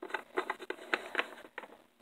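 Light, irregular tapping and clicking of hard plastic Littlest Pet Shop figurines being handled and set down on a tabletop, about a dozen small clicks that stop shortly before the end.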